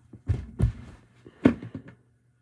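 A child's footsteps thudding on the floor close to the microphone. There are three heavy thuds with lighter knocks between them, and the last, about one and a half seconds in, is the loudest.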